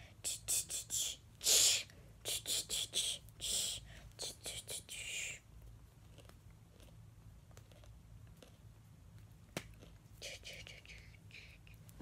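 A person whispering short, hissy syllables in quick succession, keeping time with a beat, for about the first five seconds. Then it goes quieter, with one sharp click a little before ten seconds in and a few more whispered bursts near the end.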